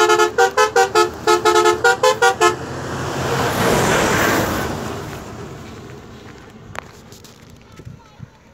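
A bus's multi-tone musical horn playing a quick tune of about a dozen short notes, then the bus passes close by with a rush of engine and tyre noise that peaks about four seconds in and fades away.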